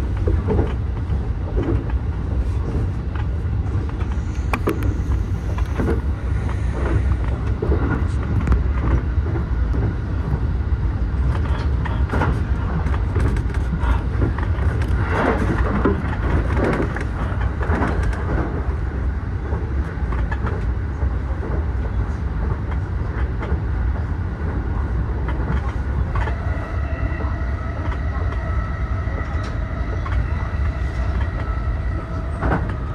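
JR East E233 series 8000 subseries electric commuter train running at speed, heard from inside the driver's cab: a steady low rumble of wheels on rail with scattered clicks over the track. Near the end a steady whine of several tones joins in.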